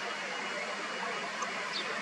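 Steady outdoor background noise, an even hiss, with a few faint, short high chirps about one and a half seconds in.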